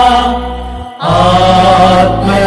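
Devotional singing of a Tamil hymn in long held notes. The phrase dies away to a short pause just before a second in, and the next line starts straight after.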